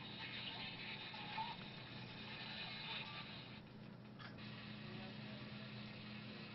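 Faint radio hiss with indistinct snatches of broadcast sound from a scanning radio used as a ghost box, over a steady low electrical hum. The hiss briefly drops out a little past the middle.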